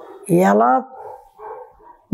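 A woman's voice speaking: one short word about a third of a second in, then a faint, broken stretch before she goes on.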